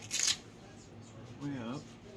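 A short, loud rustle of the back-support strap and shirt fabric as the brace is pulled into place, then about a second later a brief wordless voice sound from the man wearing it.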